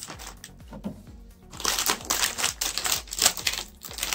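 Plastic cookie-package wrapper crinkling and crackling as it is handled and opened. It starts about a second and a half in as a rapid run of sharp crackles that stops just before the end.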